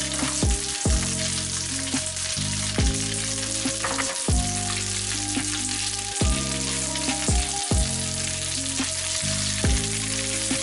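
Leftover spaghetti in tomato sauce sizzling as it fries in oil in a nonstick pan, crisping toward a crust, while a wooden spatula stirs and turns it, knocking the pan a few times. Soft background music plays underneath.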